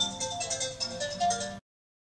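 A phone ringtone playing a melody of short tones, which cuts off suddenly about one and a half seconds in.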